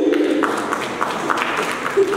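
Brief, scattered applause from a small audience, many irregular claps, with voices under it.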